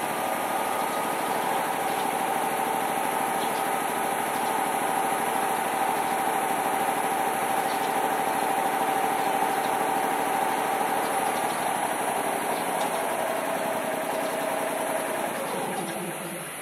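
Electric railcar's onboard air compressor running steadily with a machine hum, then winding down with a falling pitch near the end as it cuts out.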